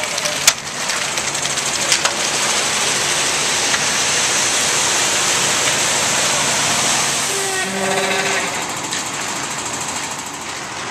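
Concrete mixer truck running steadily while concrete pours. There are two sharp knocks in the first two seconds, and a brief voice is heard near the end.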